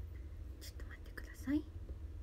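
A woman whispering under her breath, ending in a short rising voiced sound about a second and a half in, over a steady low hum.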